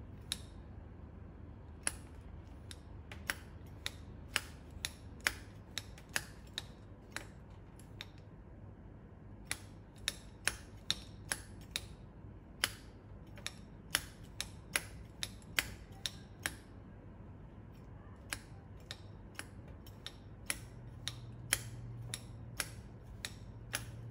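Manual tufting gun clicking sharply with each squeeze of its handle as it punches yarn through the backing cloth. The clicks come in runs of about one to two a second, with short pauses.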